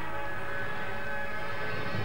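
Figure-skating programme music holding a steady sustained chord.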